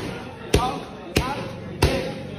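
Roundhouse kicks landing on handheld Thai kick pads: three sharp slaps about two-thirds of a second apart, in a steady rhythm.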